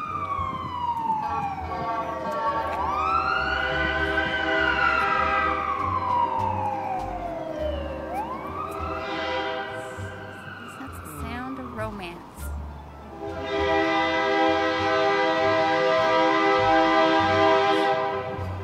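Emergency vehicle siren wailing in slow rising and falling sweeps, one cycle every few seconds. Near the end a loud steady chord of several held tones takes over.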